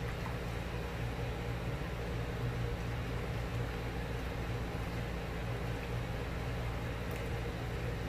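A steady low hum under a soft, even hiss: a stainless steel pot of hot, foaming soap and papaya-leaf mixture simmering on an electric hot plate as it is stirred.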